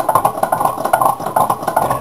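Home-built tin-can Stirling engine running, its flywheel, crank and wire linkage clicking in a steady, fast rhythm of several beats a second.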